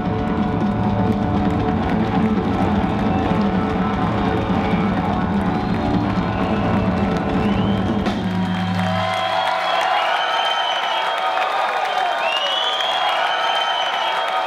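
Live blues-rock trio of electric guitar, bass guitar and drums playing a song to its close, the band sound stopping about nine seconds in. The crowd then cheers and whistles.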